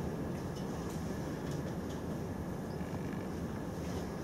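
Steady low room rumble with a few faint, scattered clicks.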